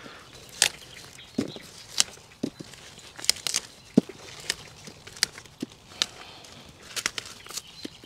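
Brussels sprouts being snapped off the stalk by gloved hands and dropped into a plastic crate: a run of sharp, irregular snaps and clicks, about two or three a second.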